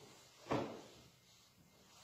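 A single short knock about half a second in, from the European flag being put away; otherwise faint room sound.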